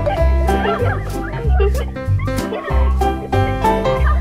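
Upbeat background music with a steady bass beat, with short squeaky sounds gliding up and down in pitch over the first couple of seconds.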